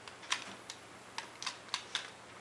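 A few light, sharp clicks at irregular spacing, about six in two seconds.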